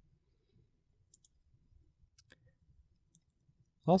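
A few faint, short computer mouse clicks as the software is navigated.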